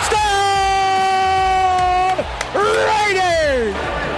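A play-by-play announcer's long drawn-out shout, held on one pitch for about two seconds, calling a touchdown catch in the end zone. After a short break comes a second drawn-out call that slides down in pitch.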